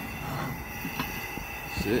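Propane burner under a cast-iron Dutch oven running with a steady high whistle over a soft hiss, the heat on to cook. A light click about a second in.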